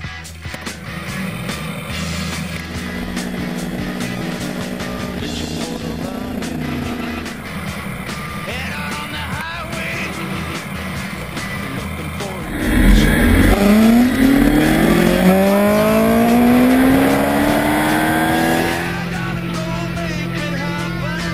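BMW K1200R's inline-four engine accelerating hard about two-thirds of the way in, its pitch climbing, dropping back at a gear change and climbing again, before easing near the end. Rock music plays over it.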